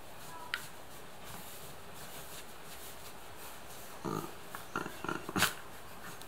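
A dog being rubbed on its belly makes a few short sounds about four to five and a half seconds in. The last and loudest of them ends in a sharp click.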